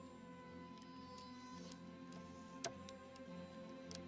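A quiet film score with long held notes. Over it come a few light clicks of Scrabble tiles being slid and set down on a table, the sharpest about two-thirds of the way through.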